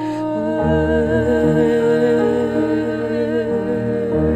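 A woman singing a long held note with vibrato into a microphone, accompanied by a grand piano playing sustained chords; the piano's bass shifts to a new chord about half a second in.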